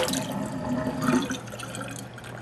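Water splashing into a stainless steel sink, fading out to a trickle and drips as the flow stops.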